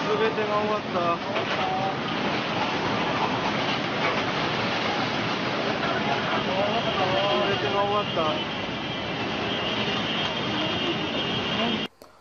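Tsunami floodwater surging through a harbour town: a steady roar of rushing water and churning debris, with people's voices calling out in the first second and again around seven to eight seconds in. A faint high steady tone sounds over it in the last few seconds, and everything cuts off abruptly at the very end.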